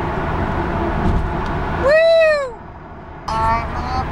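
Steady car road noise while driving, then a single loud 'whoo' from a person's voice about two seconds in, rising then falling in pitch. After a short quieter gap, near the end, a man starts singing through a hand cupped over his mouth.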